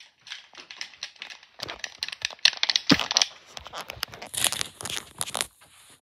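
Handling noise on the recording device's microphone: irregular rustling and crackling with many sharp clicks, the loudest click about three seconds in.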